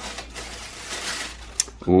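Plastic packaging rustling and scraping as a water bottle is slid out of its clear sleeve and box, with a short click about a second and a half in.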